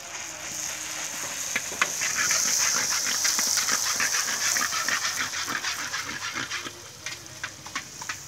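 Phuchka (puri) shells deep-frying in hot oil in an iron karahi: a loud sizzle with dense crackling that builds from about a second in and fades near the end.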